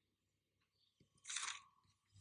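Near silence, broken a little past halfway by one brief, faint rustle lasting about a quarter of a second.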